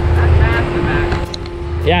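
Low rumble of an off-road vehicle crawling over rock, loudest in the first second.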